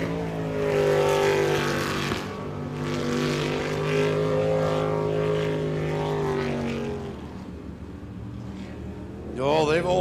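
Jet sprint boat's engine running at high power as the boat races the course. Its note dips briefly about two seconds in, holds steady, then fades after about seven seconds as the boat runs away.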